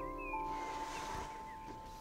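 Quiet background music with a few long held notes.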